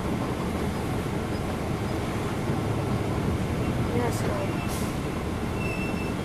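Cummins ISL9 inline-six diesel engine of a NABI 40-foot transit bus idling, heard from inside the cabin as a steady low rumble.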